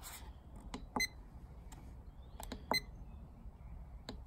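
Keypad buttons on a myenergi Zappi EV charger pressed twice, about a second in and near three seconds in; each press gives a soft click and then a sharper click with a short high beep.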